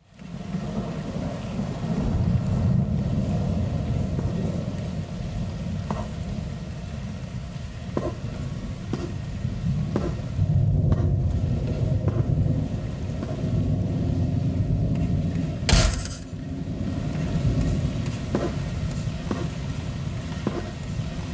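Low, rumbling noise drone opening a black metal track, with faint held tones over it, a few scattered clicks and one sharp burst of noise about sixteen seconds in.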